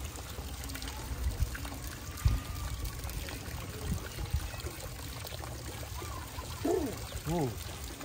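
Water pouring steadily, with a low rumble and a few soft thumps. Two short rising-and-falling calls come near the end.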